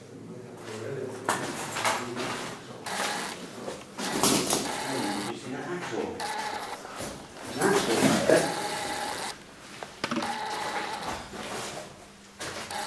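Indistinct voices mixed with irregular scuffing and handling noise.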